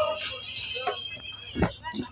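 A break in a women's Kashmiri folk song with hand-drum accompaniment. A held sung note ends at the start, then comes a quieter gap with a brief voice and a single low thump about a second and a half in.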